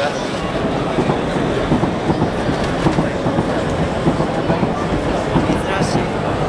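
Danjiri festival procession: a continuous rumbling clatter with many irregular short knocks, and crowd voices mixed in.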